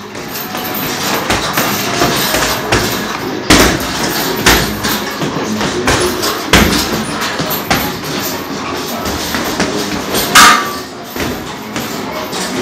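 Boxing gloves striking hanging heavy punching bags: an irregular run of thuds, with a few much harder power blows standing out among lighter, quicker punches.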